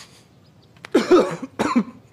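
A man coughing twice in quick succession, in reaction to the strong smell of Chinese herbal medicine.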